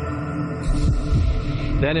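Ominous documentary underscore: a steady sustained drone with repeated low thumps throbbing like a heartbeat beneath it. A man's voice begins near the end.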